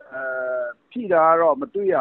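A man talking over a telephone line, with one long, level-pitched drawn-out vowel in the first half before ordinary speech resumes.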